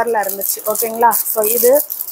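A woman talking over the crackle of a thin clear plastic packet of plastic droppers being handled. The crinkling is strongest a little after a second in.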